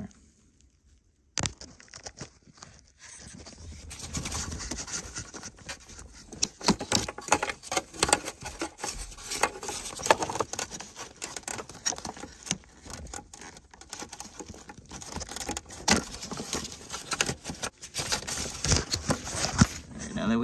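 Plastic clicks, rattling and wire-harness rustling as the yellow locking connectors are unlatched and pulled off an airbag occupant restraint controller. A single sharp click comes about a second in, and irregular clicking and handling noise fill the rest.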